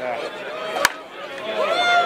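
One sharp crack of a softball bat striking the pitched ball, a little under a second in: a solid hit that goes long and deep.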